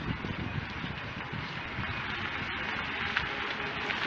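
Steady hiss and low rumble of street traffic, with no distinct event standing out.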